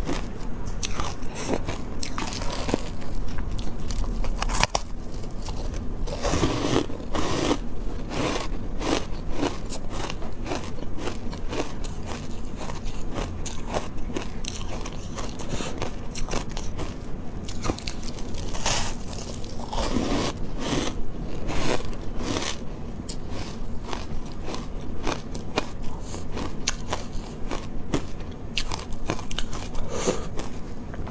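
Refrozen shaved ice being bitten and chewed, picked up close by a clip-on microphone: dense, steady crunching and crackling, with heavier bites about six seconds in and again around twenty seconds.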